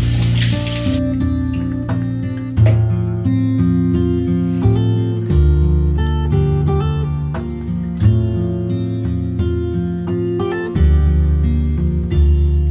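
Background music led by acoustic guitar. A running tap is heard under it for about the first second, then stops.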